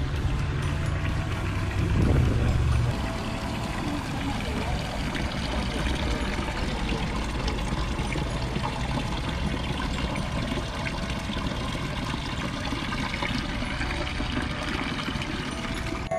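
Water from a stone garden fountain pouring and splashing steadily into its basin, with a low rumble over the first three seconds.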